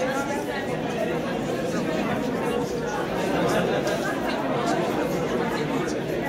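Crowd chatter: many people talking at once, steady throughout, with no single voice standing out.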